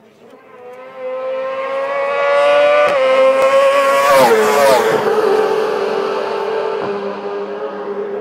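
Racing sidecar outfits passing at full throttle. The engine note rises as one approaches, drops sharply in pitch as it passes close by about four seconds in, then fades.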